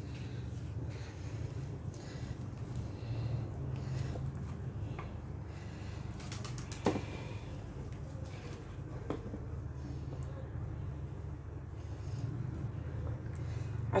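Soft scraping of a silicone spatula working thick cake batter out of a glass bowl into a metal loaf tin, with a few light knocks, the sharpest about seven seconds in, over a low steady hum.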